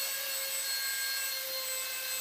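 Micro electric RC Bell 222 Airwolf helicopter hovering as it lines up to land, its electric motors and rotors giving a steady whine made of several fixed tones.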